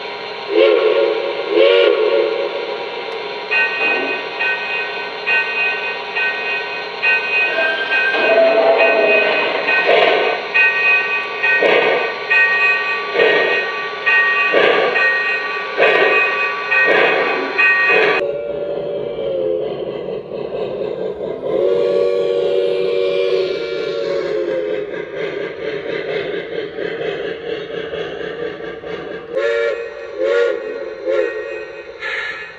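Onboard sound system of a Lionel Legacy Camelback 4-6-0 O-scale model steam locomotive: the steam whistle blows two short blasts. Then a bell rings with a slow, even beat of chuffs or strikes for about fifteen seconds. After that come more whistle blasts, one held for about three seconds, and a short toot near the end.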